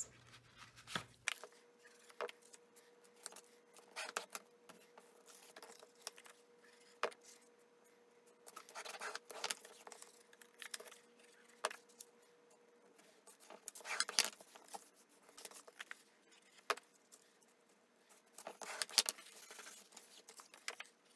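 Sheets of cardstock being handled and pressed down on a tabletop: scattered light taps and paper rustles, with three longer rustling scrapes about 9, 14 and 19 seconds in.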